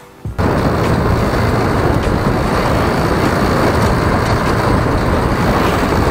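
Loud, steady rush of wind buffeting the microphone with road and engine noise from a moving motorcycle, starting abruptly less than half a second in after a brief quiet.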